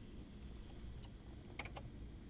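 A few faint, quick clicks about one and a half seconds in, from the forklift's ignition key being handled before the engine is started, over low background hiss.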